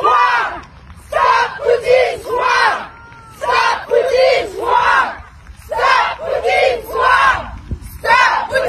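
A group of women shouting a short protest slogan in unison, over and over, each call lasting about two seconds with a brief pause between.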